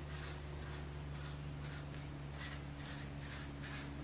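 Black Sharpie permanent marker tip rubbing on paper in short, repeated strokes, about three a second, as small circles are drawn. A faint, steady low hum lies underneath.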